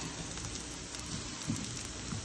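Black bean and quinoa burger patties sizzling steadily in oil on a nonstick flat-top griddle.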